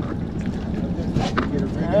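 Wind on the microphone and water noise around an open boat, steady, with a short louder rush of noise about a second and a quarter in.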